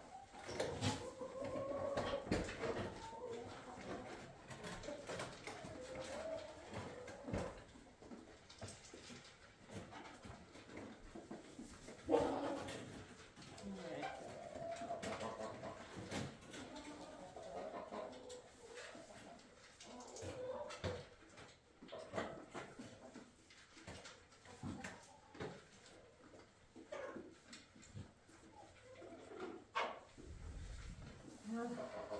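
Soft, wavering animal calls coming on and off, with rustling and scattered knocks, and one sharp knock about twelve seconds in that is the loudest sound.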